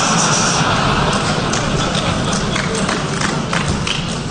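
A conference audience laughing and applauding, with a dense patter of clapping that eases slightly toward the end.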